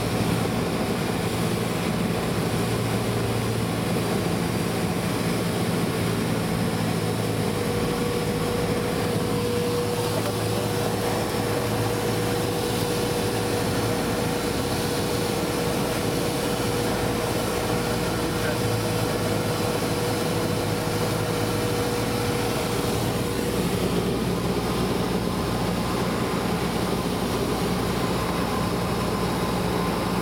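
Cessna 172's piston engine and propeller droning steadily in the cabin, mixed with airflow noise, on final approach to landing. The engine note shifts slightly about three quarters of the way through.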